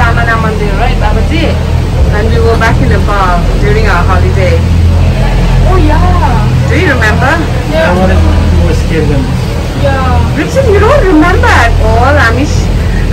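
Voices talking throughout, over a steady low hum: the cable car's running machinery heard from inside the gondola cabin.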